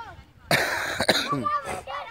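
A loud cough close by, then a single sharp crack of a cricket bat hitting the ball about a second in, followed by boys' short shouts.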